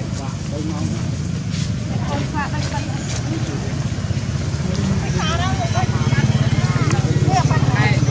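A motor engine running steadily with a low, fast, even throb that grows louder about halfway through.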